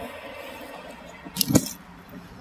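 A backpack being pulled out and lifted: a short rustle and clink of straps and buckles ending in a thump about one and a half seconds in, over a steady hiss of filtered traffic noise.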